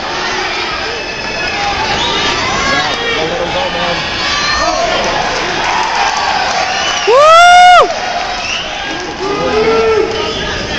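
Fight crowd shouting and cheering, many voices overlapping. About seven seconds in, one spectator close by lets out a loud, drawn-out yell that rises and then holds for most of a second, the loudest sound here.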